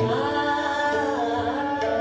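A woman singing Hindustani classical khayal in Raag Bhairav, holding long notes and gliding between them, over a tanpura drone, with tabla strokes near the start and again about one and a half seconds in.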